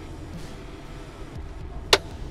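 One sharp click near the end as the yellow air-brake parking valve knob on a Ford F650's dash is pulled out, setting the parking brake, over a low steady hum.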